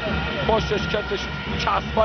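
A commentator's voice speaking in Persian over a steady din from a large arena crowd.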